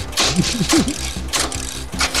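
A man laughing: a few breathy bursts with short voiced notes.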